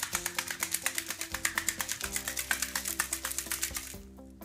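A hard-boiled egg shaken hard inside a Negg Maker egg-peeling jar with a little water, knocking against the walls in a fast, even rattle that stops at the end. Background music plays under it.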